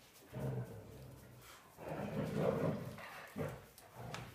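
A small fluffy dog making low vocal sounds in three short stretches, the middle one the loudest.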